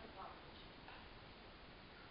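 Near silence: room tone, with a couple of faint, brief voice sounds in the first second.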